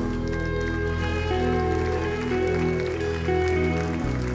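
Soft, slow instrumental worship music from a live band: sustained keyboard chords over bass, shifting every second or so, with no singing.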